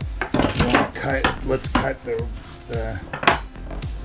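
Several sharp metallic clinks and clicks from tools and the seat's metal frame, listing wires and hog rings as the old seat back is pulled apart, the sharpest about three seconds in.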